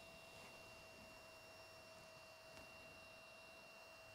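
Near silence: faint room hiss with a faint, steady two-note whine throughout.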